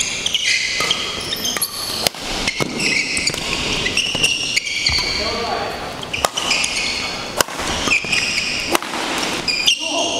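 Badminton rally: sharp racket hits on the shuttlecock roughly once a second, with rubber-soled court shoes squeaking on the floor between shots.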